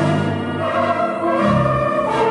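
The Chicago Stadium's Barton theatre pipe organ playing sustained full chords, with a new bass note about one and a half seconds in.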